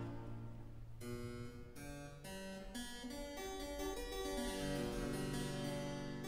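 Harpsichord playing a few spread chords over a held low bass note, the sparse continuo accompaniment of operatic recitative. It is quiet for about the first second; the bass note moves up a step near the end.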